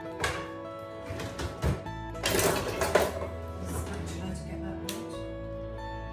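Light background music with plucked guitar runs throughout. Over it, a spatula scrapes softened butter out of a bowl into a mixing bowl, in short bursts, loudest about two to three seconds in.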